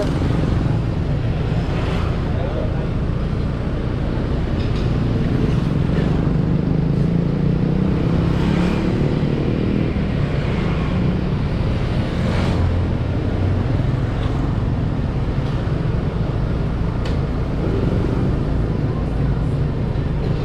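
Steady low rumble of a motorbike ride along a city street, the bike's engine mixed with the road noise of passing scooters and traffic.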